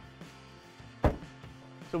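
A vehicle's rear liftgate is pulled down and slammed shut, a single sharp thud about a second in, over quiet background music.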